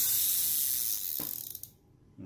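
Spinning fishing reel with a metal spool, its handle spun fast so the rotor whirs with a steady high hiss that dies away about a second and a half in, with a single click just before. The reel is turning very smoothly.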